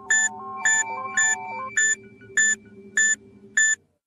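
Cartoon sound effect of an orb-shaped bomb switching on: a short run of stepping electronic tones over a steady low hum, with seven high electronic beeps at an even pace of about two a second, its timer counting down. The sound cuts off suddenly near the end.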